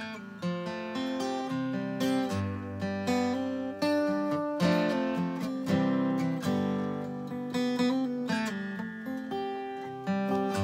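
1982 Takamine dreadnought acoustic guitar, a copy of the Martin D-28, played through its pickup. It plays a chord pattern as the song's instrumental introduction, each note starting crisply and ringing into the next.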